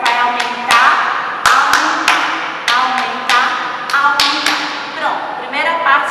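Hands slapping the thighs and clapping in a body-percussion rhythm: about ten sharp strikes, unevenly spaced, with a voice sounding between them.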